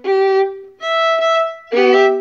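Violin bowed in three separate notes of under a second each, the last sounding several strings together as a chord. It is a triple stop being built up string by string, an exercise the player says feels clunky at first.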